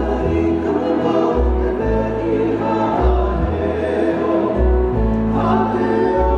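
Live Hawaiian song: men singing over two strummed acoustic guitars and an upright bass playing long, deep plucked notes.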